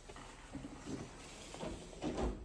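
A door being pulled shut: soft knocks and rubbing, with a couple of low bumps about a second and a half in.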